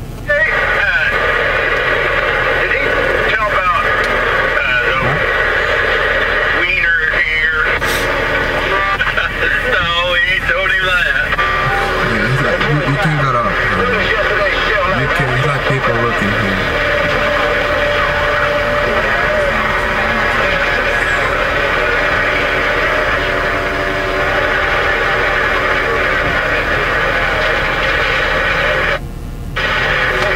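Indistinct voices, too unclear to make out, over a steady hum, with a brief dropout about a second before the end.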